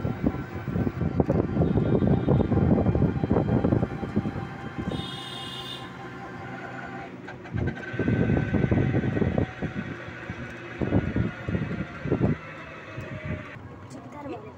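Wind buffeting the phone's microphone from a moving open e-rickshaw (toto), coming in loud gusts over road noise. A short high-pitched tone sounds about five seconds in.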